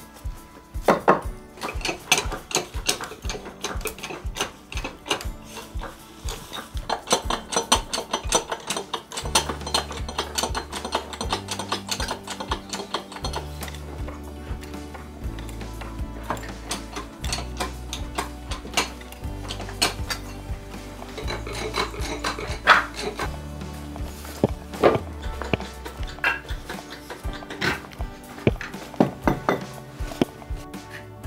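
Background music with a quick, steady percussive beat; a low bass line comes in about nine seconds in.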